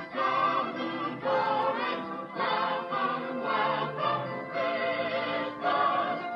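Choir singing Christmas music, heard through a TV's speaker as the end-credits music of a VHS tape.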